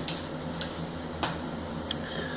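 A steady low hum with three faint ticks, about two-thirds of a second apart.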